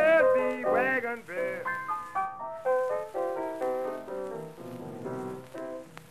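Blues piano on an early-1930s 78 rpm recording: a man's sung note trails off in the first second or so, then the piano plays alone, a run of separate notes that thins out near the end.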